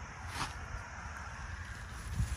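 Wind rumbling on the microphone, with one brief rustle about half a second in.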